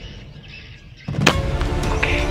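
A single sharp shot from a PCP air rifle about a second in, with background music running on after it.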